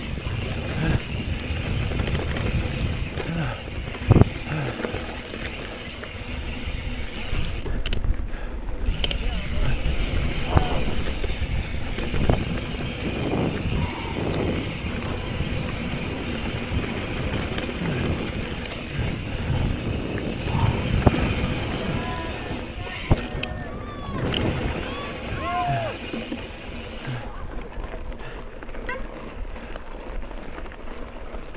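Wind rushing over an action-camera microphone with the rumble of knobby mountain-bike tyres on a dry dirt trail and the bike rattling over bumps during a fast descent. A sharp knock about four seconds in.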